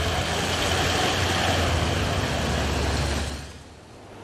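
Toyota Land Cruiser SUV driving, a steady engine hum under road and wind noise that fades out just before the end.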